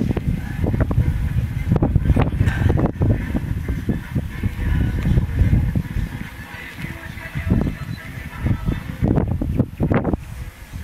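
Rustling and crackling as a foam seedling roll (a 'snail') of sweet-corn seedlings is unrolled by gloved hands and soil crumbles off the roots, over a steady low rumble.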